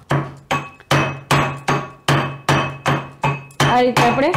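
Steel pestle pounding ginger and garlic in a stainless-steel mortar, about two and a half strokes a second. Each stroke is a sharp metallic knock with a short ring.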